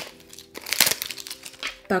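Packaging being unwrapped by hand: irregular crinkling and rustling, strongest from about half a second in.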